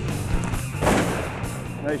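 A shotgun shot fired at a flying duck, a sharp blast about a second in that fades in a short echo, over steady background music.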